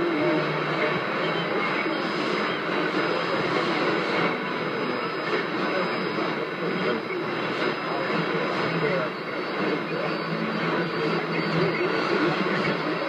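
A shortwave AM broadcast, Rádio Nacional da Amazônia on 6180 kHz, playing through a Toshiba RP-2000F receiver's speaker. It is a steady hiss of static and band noise with faint programme audio, a voice, underneath, and the loudness dips slightly now and then.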